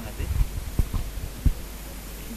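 Microphone handling noise: a few dull, low thumps, the loudest about a second and a half in, as a microphone is moved and brought up to someone's mouth.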